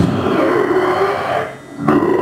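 Beatboxer holding one long, drawn-out vocal sound into a handheld microphone in place of the rhythmic beat; it fades out about a second and a half in, and a new sound starts just before the end.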